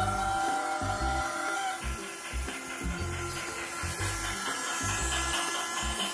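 Battery-powered toy steam train running on its plastic track: a steady faint motor whine over an uneven, repeating low chugging, with a tone at the start that fades out about two seconds in.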